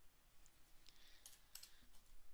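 A few faint clicks of a computer keyboard being typed on, scattered mostly through the second half.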